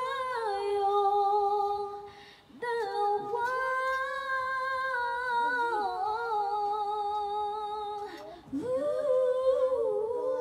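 A woman singing unaccompanied into a microphone in long, held notes that slide between pitches. There are short breath gaps about two seconds in and again near the end.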